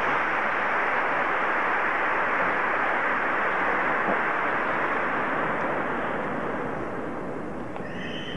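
A large audience applauding steadily, easing off a little near the end, in response to a call to greet visitors.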